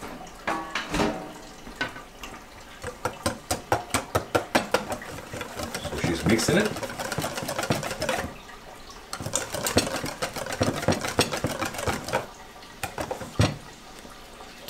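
Wire whisk beating a runny batter in a stainless steel bowl, the wires clicking rapidly and rhythmically against the metal, in two spells with a short pause near the middle.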